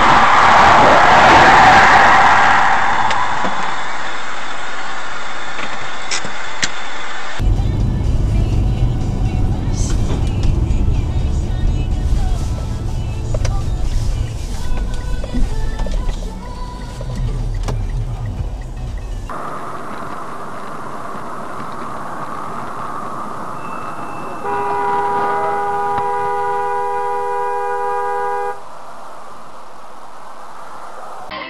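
Dashcam audio of road traffic: a loud noisy rush in the first seconds, then low engine and road rumble, then a car horn held for about four seconds near the end, cutting off abruptly.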